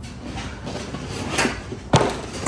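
A car door being shut: some handling and rustling, then one sharp thump just before the end.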